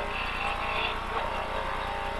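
Lada VFTS rally car's four-cylinder engine running steadily under way at stage speed, heard from inside the cabin.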